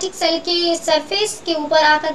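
A woman's voice speaking, with some drawn-out, sing-song syllables.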